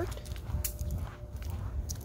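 Footsteps on a concrete sidewalk scattered with dry leaves: a few short, crisp steps over a steady low rumble.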